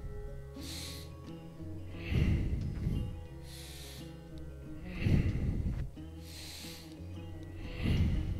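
A man breathing hard with effort, with a sharp, noisy breath about every second and a half. Louder, fuller breaths alternate with hissier ones, in time with repeated back-extension lifts. Soft, steady background music plays underneath.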